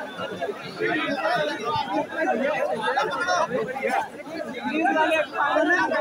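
Crowd chatter: many voices talking over one another at once, steady throughout, with nearer voices standing out in front.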